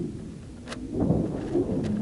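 Uneven low rumbling picked up by a camera riding a high-altitude weather-balloon payload, with two sharp clicks about a second apart.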